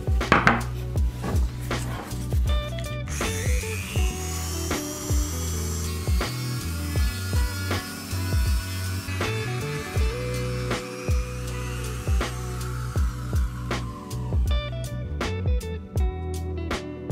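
Rotary tool (Dremel) grinding out the plug hole in a 3D-printed resin mold, its whine rising as it spins up about three seconds in and stopping near the end. Background music with a steady beat plays throughout.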